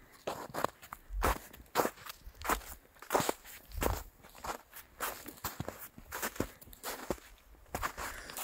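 Footsteps in fresh snow at a steady walking pace, about three steps every two seconds.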